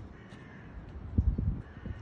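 Two harsh animal calls, about half a second each, one near the start and one near the end, with a cluster of dull thuds in between from footsteps and handling of the camera on the woodland ground.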